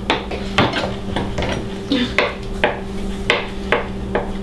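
Kitchen knife chopping hard-boiled eggs on a plastic cutting board, the blade knocking on the board in sharp taps about twice a second.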